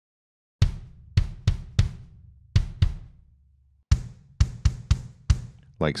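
Sampled kick drum from Logic Pro X's Drum Kit Designer, played from a MIDI keyboard controller: about a dozen hits in irregular groups starting about half a second in, each a sharp attack with a deep, punchy tail that rings on between strikes.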